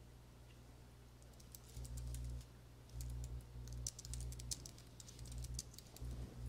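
Computer keyboard typing: quick, irregular runs of faint key clicks starting about a second and a half in, as a command is typed into a terminal. A low hum switches on and off underneath.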